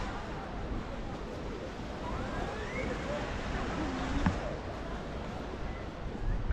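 Busy beach ambience: a steady hiss of wind and surf with faint, distant voices of people on the beach and in the water.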